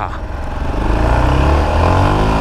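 Yamaha XT660's single-cylinder four-stroke engine accelerating hard, revs climbing from about half a second in as it gets louder. The pull is hard enough to lift the front wheel.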